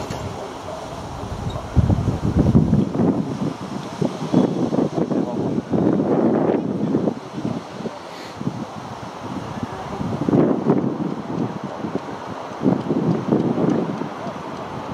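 Indistinct low talk close to the microphone, in uneven bursts, with wind noise on the microphone underneath.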